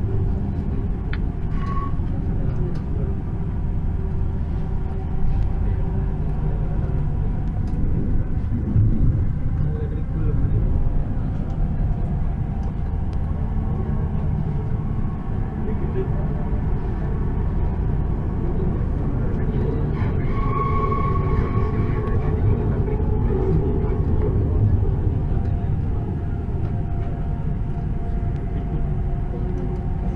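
Hyderabad Metro Rail electric train running along the elevated track, heard inside the carriage as a steady low rumble. A brief higher tone comes about two-thirds of the way through.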